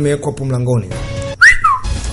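Film soundtrack: a man's voice holding a drawn-out, slightly falling tone, then about one and a half seconds in a brief whistle that swoops up and slides down, with music and noisy soundtrack sound behind.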